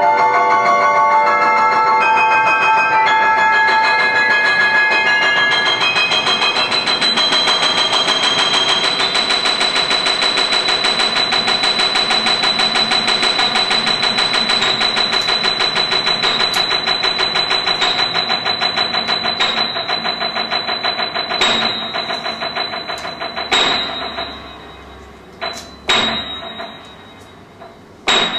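Live instrumental music of struck pitched notes. A shifting cluster of notes narrows into a fast, even tremolo on one high note, then breaks up into a few single sharp strikes near the end as it grows quieter.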